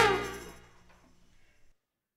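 The final held chord of a brass band, horns over drums, dying away within about half a second as the song ends, then silence.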